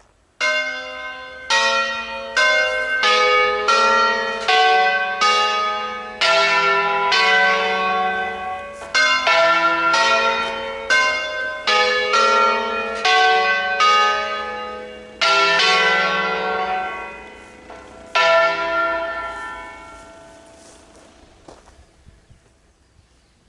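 Church bells rung in a 'concerto solenne', the Lombard style of playing a tune on swinging tower bells. About thirty strokes on bells of different pitches follow one another at roughly two a second, each ringing on into the next. A last stroke near the end is left to ring away.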